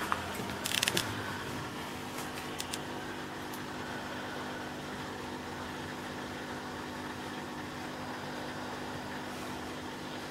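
A steady machine hum holding a few steady low pitches, with a few short clicks about a second in and again between two and three seconds.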